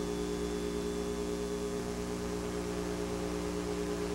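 Steady low electrical mains hum with a faint hiss in the audio of an old broadcast TV recording, heard during a blank black-screen gap between commercials.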